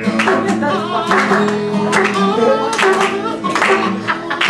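Acoustic guitar strummed in chords with a man singing along.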